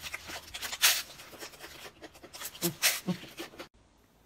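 Close-miked eating sounds: crisp crunching and chewing bites with a few sharp crackles. The sound cuts off abruptly near the end.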